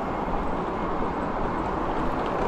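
Steady city road traffic: an even rush of passing cars with no single vehicle or event standing out.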